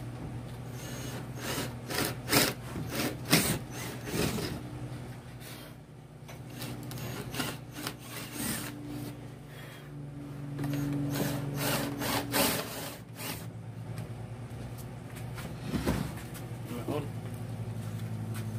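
Cordless drill boring holes through an OSB board in several short runs, the bit grinding through the wood strands. These are starting holes for a jigsaw blade.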